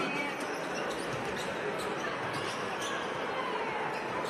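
A basketball being dribbled on a hardwood court, a run of sharp bounces roughly every half second, over the steady noise of an arena crowd.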